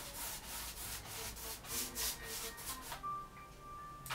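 Bristle paintbrush stroking across stretched canvas: a quick run of scratchy strokes, about three a second, that stops about three seconds in. Soft music with a held tone sounds faintly underneath near the end.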